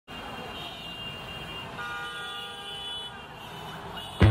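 Road traffic with car horns tooting, one horn held for just over a second in the middle.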